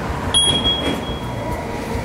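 Hunter wheel balancer spinning a mounted tire and wheel for a balance check, a steady mechanical whir. A high steady tone sounds briefly near the start.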